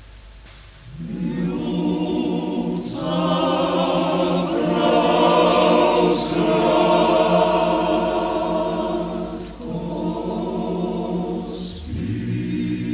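Male choir singing a traditional Slovenian song a cappella in sustained chords. After a short breath pause at the start, the voices come back in about a second in and swell to their loudest in the middle, with a few crisp sibilant consonants.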